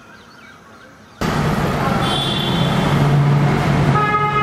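Quiet background, then about a second in a sudden jump to loud, steady road traffic noise: car engines running in heavy traffic, with a low hum underneath.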